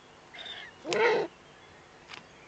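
Eurasian eagle-owl chick calling: a brief thin note, then about a second in a louder, raspy begging call lasting under half a second.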